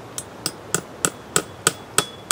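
A nail being driven into a living tree trunk with blows from an axe: sharp, evenly spaced strikes, about three a second.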